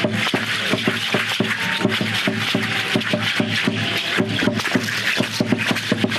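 Live percussion for a danza Guadalupana (Aztec-style dance): strikes in a fast, steady beat over a constant high rattling hiss.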